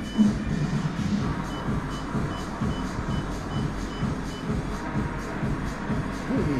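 Technogym exercise bike console beeping: a row of about eight short, identical high beeps, a little over two a second, as the workout is started from the console. Background music plays underneath.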